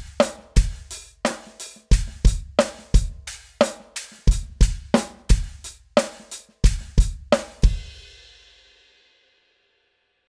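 Drum kit playing a groove in 7/8, with kick drum, snare and cymbals on evenly spaced accented strokes. It stops on a last cymbal hit about three-quarters of the way through that rings out and fades away.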